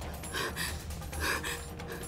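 A shocked woman's gasps, two sharp intakes of breath, over a low, steady dramatic music drone.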